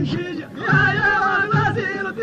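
Men's voices singing a traditional Amazigh folk song, the melody wavering, over a regular low beat repeating about every 0.7 seconds.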